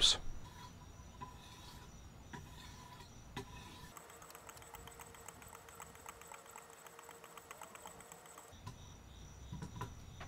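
Faint light clicks and soft scraping of 3000-grit glass sharpening stones on a Wicked Edge sharpener's guide rods, stroked along the edge of a USMC KA-BAR knife blade.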